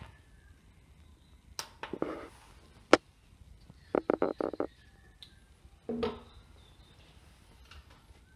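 Scattered handling clicks and knocks of a serrated bread knife and its metal sharpening jig on a wooden tabletop beside an electronic scale: a single sharp click about three seconds in, a quick run of four or five taps about a second later and a heavier knock near six seconds.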